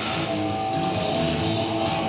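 Guitar-led music playing at a steady level.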